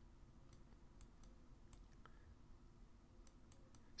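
Near silence with faint, irregular clicks of a computer mouse, about ten of them, bunched more closely near the end.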